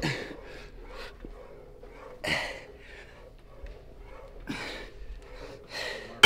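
A man breathing hard through his mouth while straining through reps on a seated shoulder press machine: three forceful exhales about two seconds apart.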